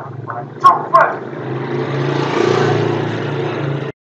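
Two short, loud shouts from a man in a locker room, followed by a steady noisy roar of background commotion that swells in the middle and cuts off suddenly near the end.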